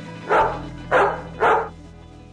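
A dog barking three times, about half a second apart, over background music.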